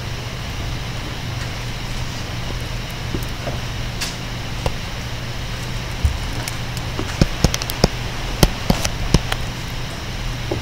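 Stylus tapping on a tablet screen: a few separate taps, then a quick run of clicks from about seven to nine seconds in as a word is handwritten, over a steady low hum.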